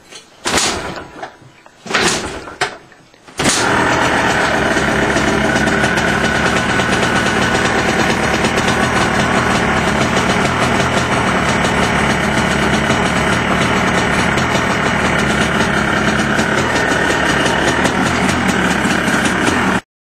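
Cold start of a 2002 Yamaha Blaster's single-cylinder two-stroke engine on full choke after weeks unused: a few kicks of the kick starter, then it catches about three and a half seconds in and runs steadily.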